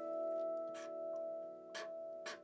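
Steel tongue drum notes ringing on in a steady sustain, several tones sounding together, with a few short light clicks over them.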